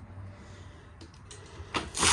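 Faint room tone with a low hum and a few light ticks, then near the end a short swish as a hand takes hold of the travel trailer's refrigerator freezer door to pull it open.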